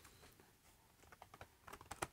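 Near silence, with a few faint, light clicks and ticks in the second half as sheets of wood veneer are handled.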